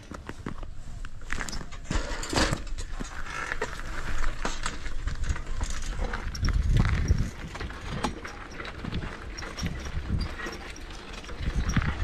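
A bicycle being ridden on a rough road, its wire front basket and frame giving irregular rattles and knocks, with wind rumbling on the microphone, strongest around the middle.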